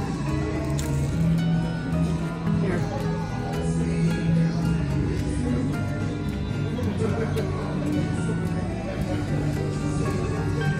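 Background music with long held notes, playing steadily under a brief spoken word.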